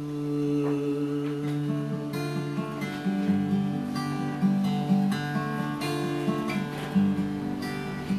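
Steel-string acoustic guitar played solo, an instrumental passage between sung lines: separately picked notes ringing over sustained low notes.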